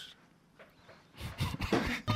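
Near silence for about a second, then short, irregular human vocal noises such as a cough or breath, without clear words.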